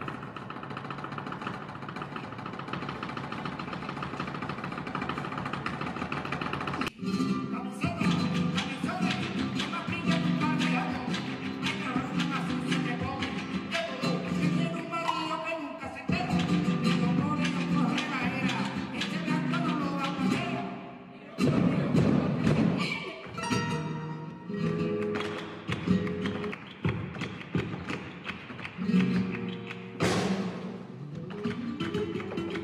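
Flamenco music: a singing voice with guitar over sharp percussive strikes, the strikes thickest in the first seven seconds. The music breaks off abruptly about twenty seconds in, then resumes.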